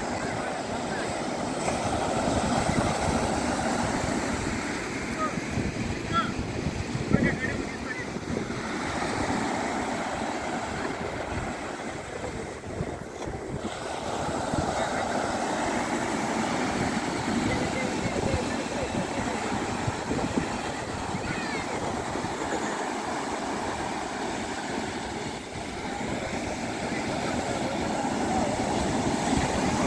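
Sea surf breaking and washing up a sandy beach: a steady rush that swells and eases as each wave comes in, with faint voices of people in the water.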